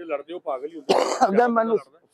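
A man talking, with a loud throat-clearing about a second in.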